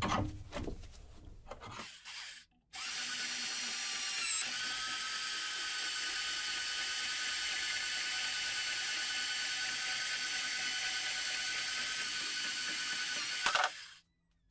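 A few knocks and handling sounds of a steel tube in a vise. Then, about three seconds in, a portable band saw starts and runs steadily as its blade cuts through the rusty steel tube, a steady whine with several high tones. Near the end there is a louder burst as the cut goes through, and the sound stops suddenly.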